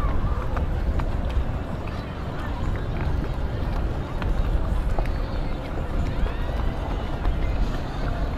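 Indistinct voices over a heavy, uneven low rumble, with a few faint clicks.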